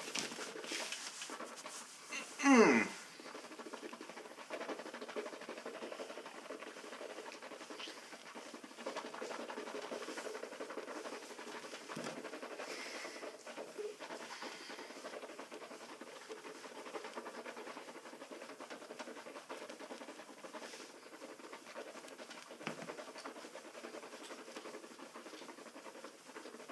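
Faint breathing through the nose while mouthwash is swished around in closed mouths, with one short muffled vocal sound through closed lips, falling in pitch, about two and a half seconds in.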